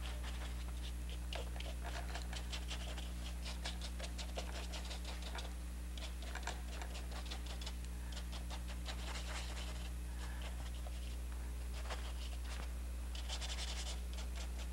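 A paintbrush scrubbing and dabbing oil paint on a stretched canvas: many quick, irregular scratchy strokes, over a steady low electrical hum.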